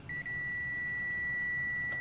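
Digital multimeter's continuity beeper sounding one steady, high-pitched beep lasting nearly two seconds as the probes bridge a connector between two LED backlight strip sections: the connection is good.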